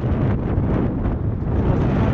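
Wind buffeting a GoPro's microphone as a mountain bike rides along a road at speed: a loud, steady, deep rush.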